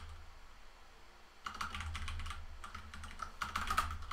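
Computer keyboard typing: a quick run of keystrokes starting about a second and a half in, as code is edited in a text editor, over a low steady hum.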